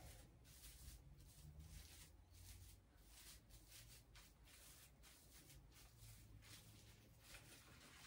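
Near silence: quiet room tone, with faint rustling as the wired branch tips of an artificial Christmas tree are bent into shape by gloved hands.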